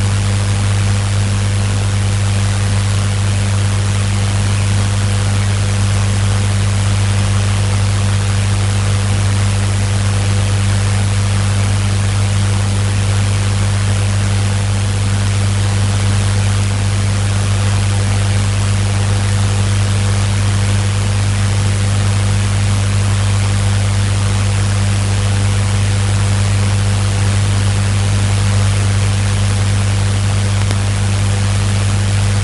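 Loud, steady low hum with an even hiss over it, unchanging throughout, with no speech or distinct events.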